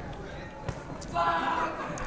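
Boxing bout: two short knocks from the ring, a fraction of a second apart, over low hall sound, then a voice speaking briefly a little past halfway.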